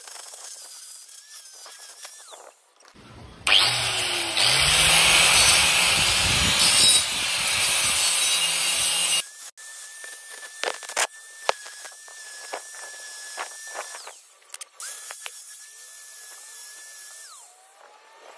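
Makita angle grinder with an abrasive disc grinding rust off a steel ring: a loud grinding that starts about three seconds in and cuts off suddenly after about six seconds. Before and after it, quieter handling clicks over a steady high whine.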